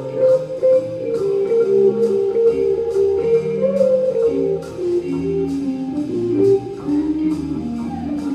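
Live jazz combo playing a blues: an electric guitar plays a single-note melodic line over low bass notes, with the drummer keeping time on a cymbal in strokes about two a second.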